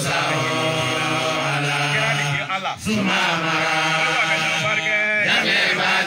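A group of men chanting an Islamic devotional chant together into handheld microphones, in long sustained melodic phrases, with a brief breath about two and a half seconds in.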